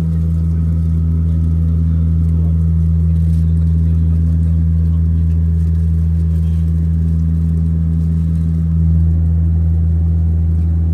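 Cabin noise of a Saab 340 turboprop in cruise: the engines and propellers make a steady, loud low drone with a deep hum underneath.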